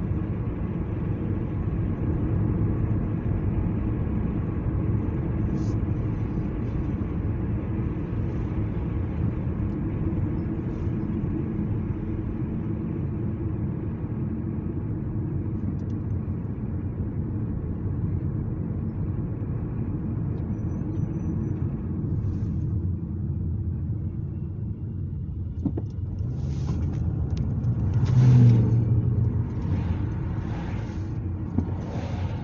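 Road noise inside a moving car's cabin: a steady low rumble of engine and tyres. Near the end it swells louder for a moment, with a few short bursts of hiss.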